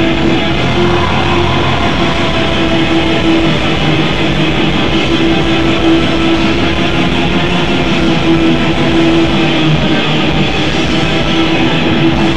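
Black metal band playing live: distorted electric guitars holding a sustained note over a fast, even kick drum beat.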